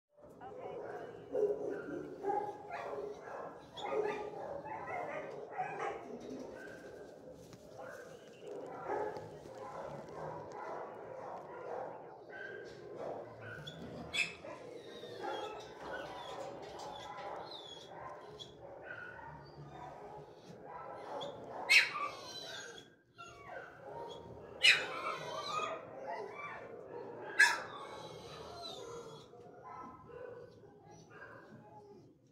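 Dogs barking and whining in a shelter kennel block, a steady jumble of dog sounds, with three loud, sharp sounds in the last several seconds.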